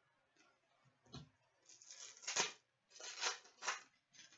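Crinkling rustle of a foil trading-card pack wrapper and cards being handled, in a few short bursts, with a soft knock about a second in.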